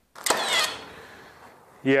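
Milwaukee cordless finish nailer firing one nail into a pine board: a sharp snap about a quarter second in, followed by a noise that fades over about a second.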